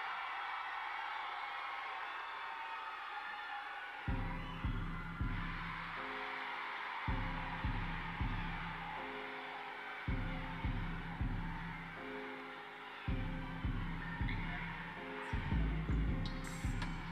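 Graduating class and audience cheering and shouting in an auditorium. About four seconds in, a song with a heavy bass beat starts playing over the PA for the recessional, under the continuing cheers.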